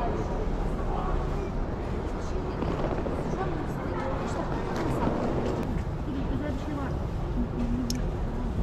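Station concourse ambience: indistinct voices of passers-by over a steady low rumble, with a few faint clicks.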